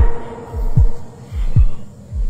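Deep bass thumps about every 0.8 seconds, each dropping in pitch, over a steady held tone, from an added soundtrack.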